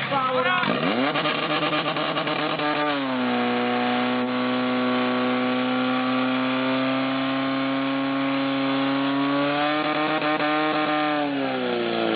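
Portable fire pump engine revving up sharply about a second in, then running steadily at high revs while it pumps water out through the hoses. The pitch climbs a little and then drops back near the end.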